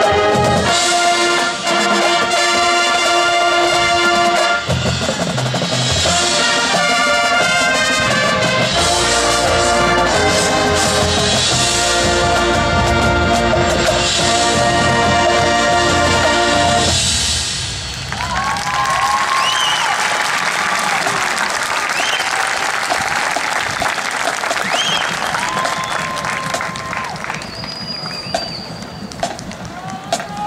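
High school marching band, brass and percussion, playing the closing bars of its show and stopping about 17 seconds in. A crowd then applauds and cheers, with scattered whoops.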